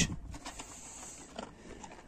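A Kangal dog eating dog food from a plastic bucket: faint eating sounds with a few light clicks.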